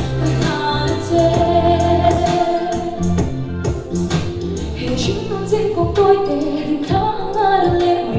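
A young woman singing a song into a handheld microphone over accompanying music with a steady bass line and a beat.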